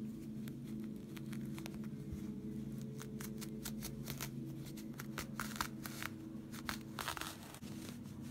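Close-up rustling, scratching and small snapping clicks of quilted cotton fabric and its loose threads being picked at with a thin wooden stick and fingers, busiest in the second half. A steady low hum runs underneath.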